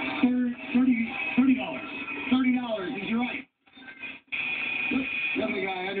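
Speech from a television game show, recorded off the TV's speaker, cutting out for about a second in the middle.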